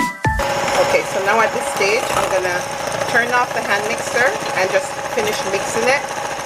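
Electric hand mixer running with its beaters in cake batter in a glass bowl, a steady motor whine with a wavering pitch on top. It starts about half a second in, just as a short music jingle cuts off.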